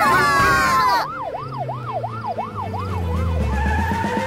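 A cartoon police-car siren wailing up and down in quick, even cycles, about three a second, over a low car-engine hum that rises toward the end. A loud cluster of wavering tones carried over from before cuts off about a second in, just as the siren starts.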